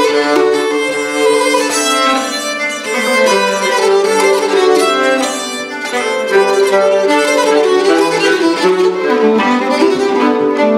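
Two nyckelharpas, Swedish keyed fiddles, bowed together in a duet, playing a continuous run of changing notes in two parts.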